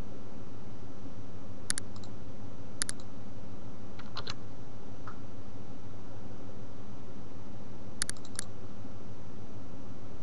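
Computer mouse clicking: single clicks about two and three seconds in, a couple near four seconds, and a quick run of clicks around eight seconds, over a steady low hum.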